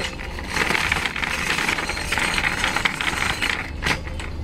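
Wheels rolling over a concrete floor with a continuous rattling clatter, ending in a single sharp knock.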